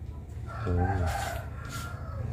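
A long, drawn-out animal call in the background, held for about a second and a half, with a short low arched sound under it just under a second in.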